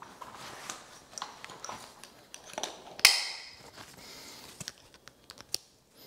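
Webbing straps and plastic buckles of a backpack vacuum harness being pulled and fastened: light rustling with scattered small clicks, and one sharp snap about three seconds in.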